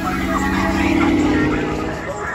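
Ford Crown Victoria's V8 engine revving as the car accelerates away, loudest about a second in and then easing off.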